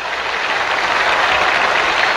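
Audience applause, fading in from silence and building to a steady, dense clatter of clapping.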